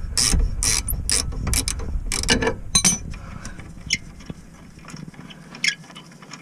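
Rapid ratcheting clicks of a spanner winding out a loosened 19 mm rear brake caliper bolt on a Nissan 350Z. The clicks run for about three seconds, then stop, and a few faint metallic clicks follow.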